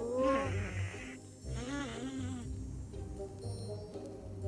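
Cartoon ant characters' wordless vocal sounds: a rising vocal phrase at the start and a wavering one about a second and a half in, over light background music.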